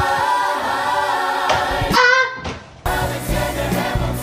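Musical-theatre ensemble singing in chorus, with one held, high "aah" note about halfway through that cuts off abruptly after under a second.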